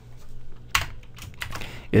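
Computer keyboard keystrokes: a few separate clicks, the loudest about three-quarters of a second in.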